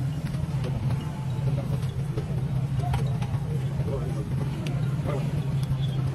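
A vehicle engine running with a steady low hum, under faint voices.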